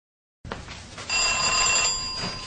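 A single bright bell-like ring, about a second long, beginning about a second in and fading at the end, over faint room background that comes in just before it.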